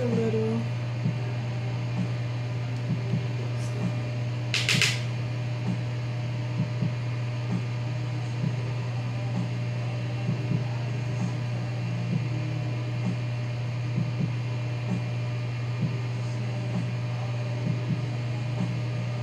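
A steady low hum, with faint soft ticks every second or so and one short hiss about five seconds in.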